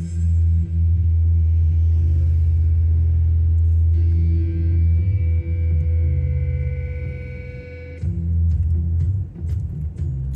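Music with a deep, held bass line, dipping briefly a little before the end, with a few sharp ticks in the last seconds.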